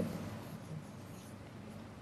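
A marker pen writing on a whiteboard, faint.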